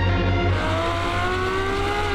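Ferrari F12's V12 engine accelerating, its pitch rising steadily from about half a second in, over electronic music with a steady bass beat.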